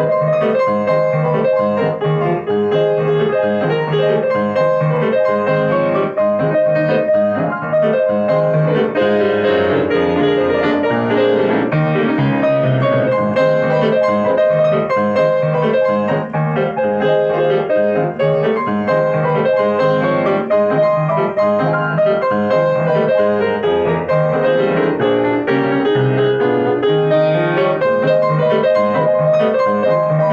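Grand piano played solo: a continuous arrangement of melody over chords, played without a break at a steady volume.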